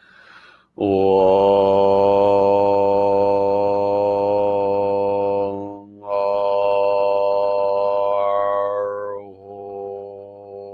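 A man chanting a mantra in long, held vowel tones on one low pitch, with a short break for breath a little past the middle. Near the end the vowel shifts and the tone carries on more quietly.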